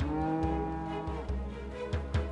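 A cow in a herd of white cattle mooing once: one long call of about a second. Background music plays under it.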